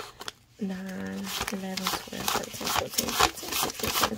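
Paper dollar bills rustling and snapping as they are thumbed through and counted by hand: a quick run of short crisp strokes from about halfway in.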